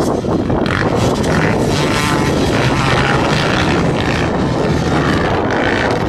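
A pack of motocross bikes racing, several engines running at once in a continuous drone, with pitch rising and falling as the riders work the throttle.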